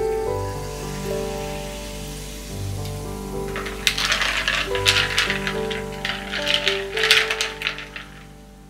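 Ice cubes clinking and rattling against a tall glass as a freshly poured soda drink is stirred, a burst of quick clinks from about halfway in, over gentle piano music. A faint carbonated fizz is heard at the start.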